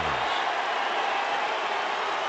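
Steady background crowd noise from a ballpark full of spectators, heard through a TV broadcast.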